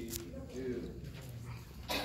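Indistinct voices, short and broken, with one sharp click just before the end.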